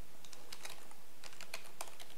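Computer keyboard typing: about a dozen key clicks in two quick runs, with a short pause between them.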